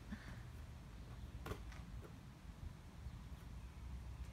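Quiet outdoor background: a steady low rumble, with two faint short taps, one about one and a half seconds in and another a second later.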